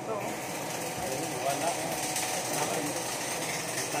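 Stick-welding arc on a steel pipe joint, crackling steadily and thickening about halfway through as the electrode burns.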